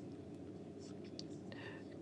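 A pause between phrases of speech: a faint steady hiss with a faint voice in the background.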